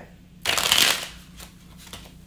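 A tarot deck being shuffled by hand: one short burst of cards riffling, about half a second long, starting about half a second in.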